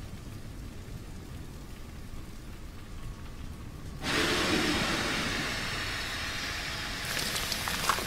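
Dramatic sound effects around the Colossal Titan: a deep, steady rumble, then about four seconds in a loud rushing hiss surges in, like steam or wind, with a few sharp crackles near the end.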